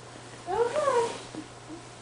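A single meow, about half a second long, starting about half a second in, rising then falling in pitch.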